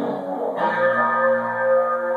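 Custom electric guitar played through an amplifier: a held note dies away and a new chord is struck about half a second in and left to ring.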